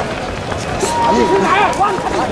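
Several men's voices shouting over one another at close range in a scuffle with riot police, with footsteps and jostling; a thin steady high tone sounds briefly about a second in.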